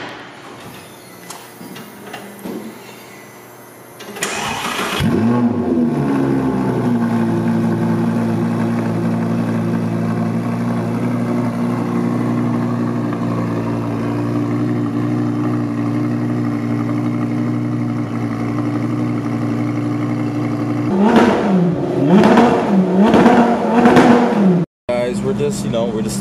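Audi R8's engine cold-started: the starter cranks and the engine catches about four seconds in with a brief rev flare, then settles into a loud, steady high cold idle.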